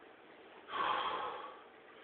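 A man's heavy breath out, once, starting suddenly about two-thirds of a second in and fading over about half a second: hard breathing from the exertion of a set of dumbbell curls to overhead presses.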